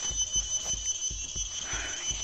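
A steady high-pitched drone, most likely forest insects, holds two even tones throughout. Low bumps of handling noise come from the phone being carried, and there is a brief soft rustle near the end.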